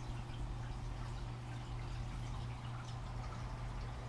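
Reef aquarium water circulation: a steady low hum from the pumps, with faint trickling and dripping of water.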